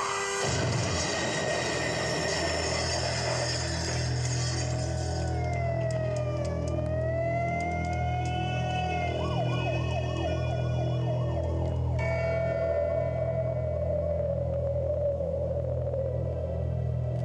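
An emergency-vehicle siren wailing in slow falling and rising glides over a low, sustained musical drone. About twelve seconds in, a new held tone takes over.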